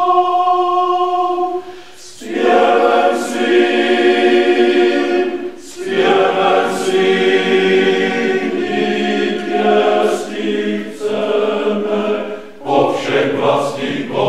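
Male voice choir singing unaccompanied in several parts: a held chord, then fuller phrases separated by short pauses for breath about two, six and twelve and a half seconds in.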